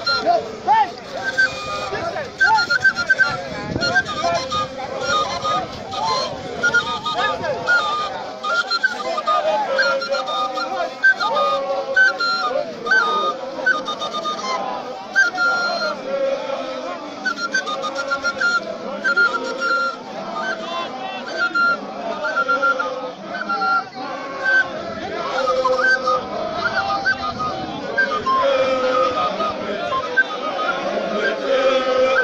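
A group of trainees singing and chanting together as they dance and march, many voices overlapping at a steady loud level.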